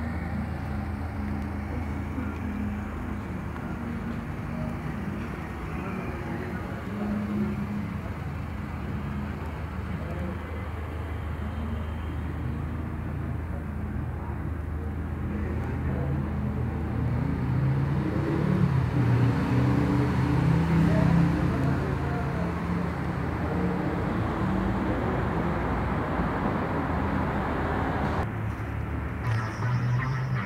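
Mercedes-Benz B200 Turbo's turbocharged four-cylinder engine idling steadily, heard against urban background noise with faint voices.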